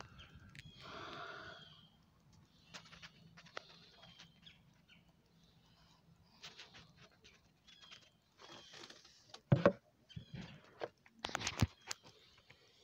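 Small birds chirping now and then in the background, with one longer call about a second in, over a faint low hum. Near the end come a few sharp knocks from handling a plastic gold pan, the loudest sounds here.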